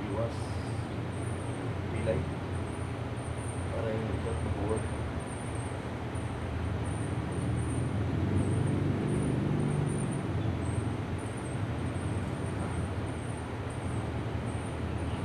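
Street traffic: a steady low rumble of engines that swells for a couple of seconds about eight seconds in as a vehicle passes.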